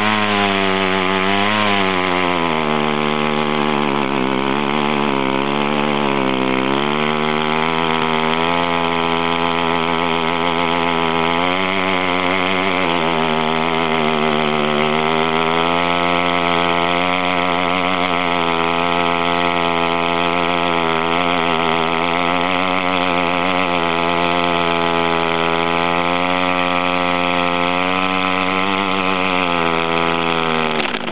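Mini bike's small single-cylinder engine held at high revs through a long stationary burnout, rear tyre spinning on the asphalt. The pitch wavers up and down at first as the throttle is worked, then holds high and nearly steady.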